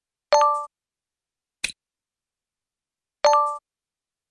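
Interface sound effects of an interactive lesson. Two short, bright chime dings of several tones ring about a third of a second each, one near the start and one near the end, with a brief click between them as answer cards slot into place.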